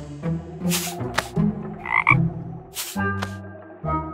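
A series of low croaking calls, several short ones in a row, with brief hissing rustles between them and a short high squeak about two seconds in.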